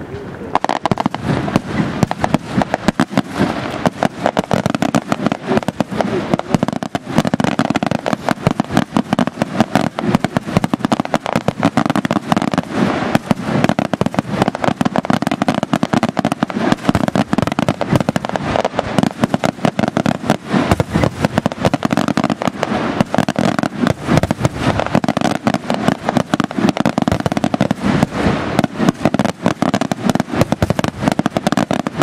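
Aerial fireworks display in full barrage: a dense, rapid run of shell bursts and crackling reports, starting about half a second in and going on without a pause.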